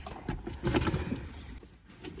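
Shopping bag rustling, with faint irregular knocks and crinkles as a hand handles the bag and the packages in it.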